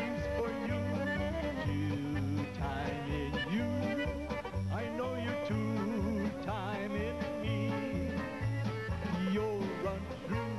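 Cleveland-style polka band playing an instrumental passage. A melody with vibrato, led by accordion, runs over an upright bass keeping a steady oom-pah beat of about two notes a second, with banjo in the band.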